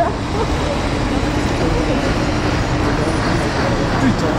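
Steady street noise: a low rumble of traffic and vehicle engines, with indistinct voices of a crowd talking beneath it.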